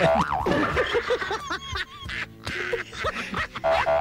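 Music played on air, with comic sound effects: short bouncing tones that slide up and down in pitch.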